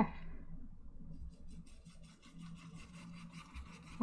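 Small paintbrush scrubbing and dabbing white oil paint into a wet canvas, a quiet scratchy brushing in quick, repeated strokes that starts about a second in.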